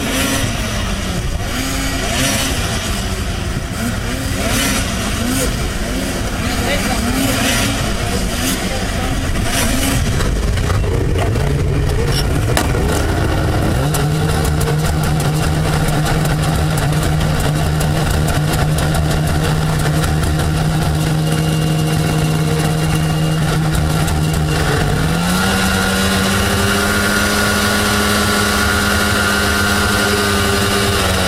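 Snowmobile engines idling with a wavering note. Partway through, the nearest engine revs up and holds a steady higher pitch, steps up again a few seconds before the end, then drops back.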